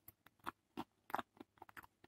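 A person chewing food close to the microphone: a string of short, irregular mouth clicks and smacks.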